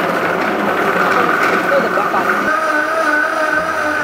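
Vitamix blender running steadily, blending soaked almonds and water into almond milk.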